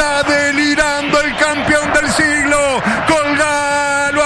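A man's voice yelling in long drawn-out phrases, each held on one high pitch and then falling away: a radio football commentator's sing-song excited call of an equalising goal.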